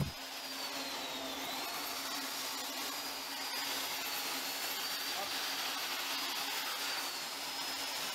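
Steady rushing shipboard machinery and ventilation noise with a low hum and a faint high whine that dips and rises, in the compartment where the arresting-gear cable is being worked on.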